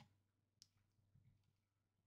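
Near silence with two faint clicks, one right at the start and one about half a second later, from computer work at a desk.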